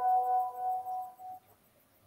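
A bell-like ringing tone, several pitches sounding together, that fades out about a second and a half in.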